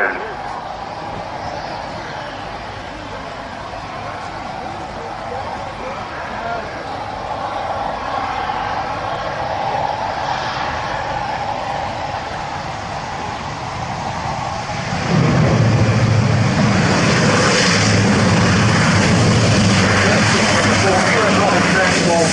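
Airbus A400M Atlas's four Europrop TP400-D6 turboprop engines running on a landing approach, a steady propeller drone with a whine in it. About 15 seconds in the sound jumps sharply louder and deeper as the aircraft lands and rolls close by, and stays loud.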